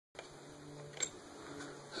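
Quiet handling of an opened plastic RC controller and its screw-on antenna, with one sharp click about a second in and a few fainter ticks, over a faint steady hum.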